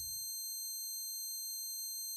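Several steady high-pitched electronic tones, one wavering slightly. Under them the deep tail of a boom fades out within the first half-second.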